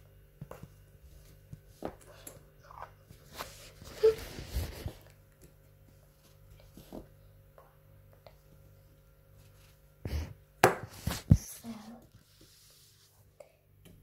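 Handling sounds of a small plastic toy doll and the filming phone being moved about on a table: scattered light knocks and a brief rustle, with a few sharper knocks near the end.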